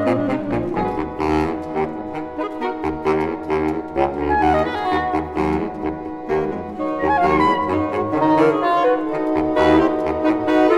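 Saxophone ensemble of soprano, alto, tenor and baritone saxophones playing together in full chords, with low notes from the baritones moving underneath the held upper parts.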